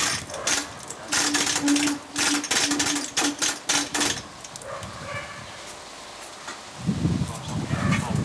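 Hand-pulled chain hoist lifting gear being worked: a quick, even run of metallic clicks and chain rattle, about five a second, lasting about three seconds. Voices are heard near the end.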